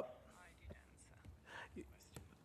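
Near silence: room tone, with a faint murmur of voice about one and a half seconds in.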